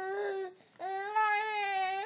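Baby whining: a short, fussy cry, then a longer one of about a second, each held on a fairly steady pitch.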